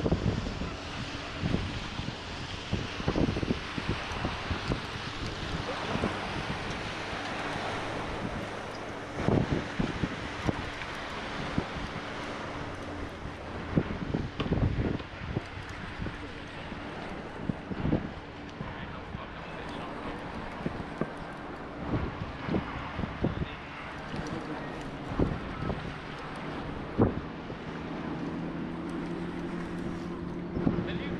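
Wind buffeting the microphone over water noise from a small fishing boat under way, with a faint steady motor hum and scattered knocks. The motor hum grows louder near the end.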